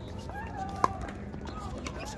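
A single sharp pock of a pickleball paddle striking the plastic ball, a little under a second in, in the middle of a rally. Faint voices can be heard in the background.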